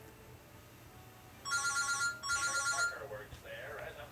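Electronic telephone ringer trilling in two short bursts, one right after the other, a little past the middle.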